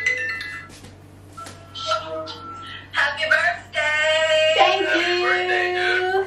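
A smartphone video-call ringtone chimes in short steady tones for the first two seconds. Then voices sing through the phone's speaker, holding long notes.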